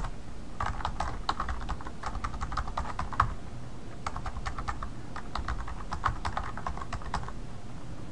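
Typing on a computer keyboard: fast, irregular key clicks in two runs with a short pause in between, stopping shortly before the end.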